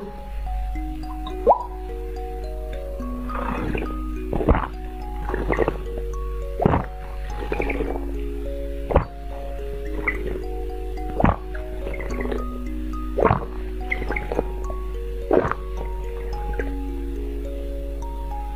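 Close-miked drinking sounds, sips and swallows of a drink from a glass, one every second or two, over background music of gentle held notes.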